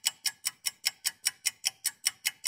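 Ticking clock sound effect: an even run of sharp, crisp ticks, about five a second.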